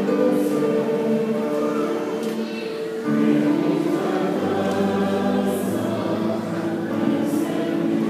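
A church choir singing, with long held notes; the singing eases briefly and a louder new phrase starts about three seconds in.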